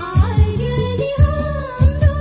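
Nepali Christian devotional song: a melody line over a steady drum beat.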